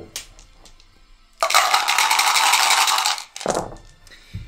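A handful of small dice scooped up with a few clicks, then shaken hard in a dice cup for about two seconds, a dense clattering rattle. Near the end they are rolled out with a few soft knocks onto a velvet-lined dice tray.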